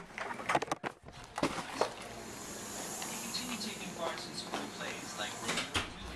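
A house door being opened: a few sharp clicks and knocks in the first second. Faint voices from the room beyond follow.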